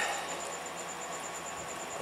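Steady background hiss with a faint, high insect trill pulsing evenly and rapidly.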